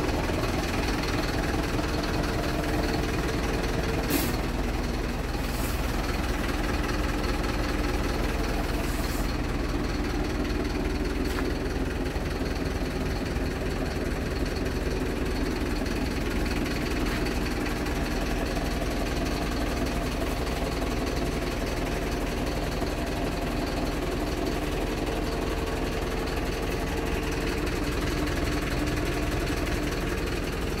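Volvo FH 460 tractor unit's 13-litre straight-six diesel idling steadily, with a couple of faint clicks.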